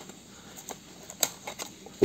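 A few faint clicks and scrapes of a utility knife blade and a small cardboard box being handled as its flap is pried open, the sharpest click a little past a second in.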